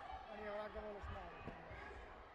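Voices in a sports hall, with one voice calling out for about a second, and a single dull thump about a second and a half in.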